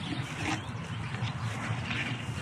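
A steady low rumble of outdoor background noise, with no distinct knocks or other events.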